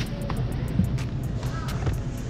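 Faint background music over a low steady rumble, with a few light clicks.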